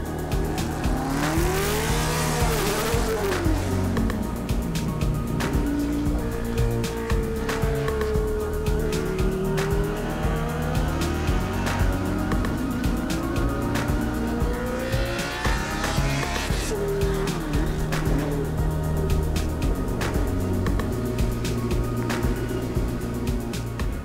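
Onboard sound of a 1981 Ensign N180B Formula One car's Cosworth DFV V8 at speed, its pitch repeatedly rising and falling through gear changes and corners. Background music plays underneath.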